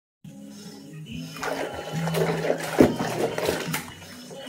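Background music with held low notes, over soapy water sloshing and splashing as wet clothes are worked by hand in a plastic basin, with a louder splash near three seconds in.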